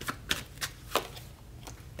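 Tarot cards being handled and dealt from a hand-held deck onto a spread: about five light, sharp card clicks and slaps at uneven spacing, the loudest a quarter second and one second in.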